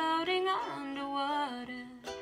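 A woman's voice singing a drawn-out line that holds and bends in pitch, with a ukulele strummed underneath.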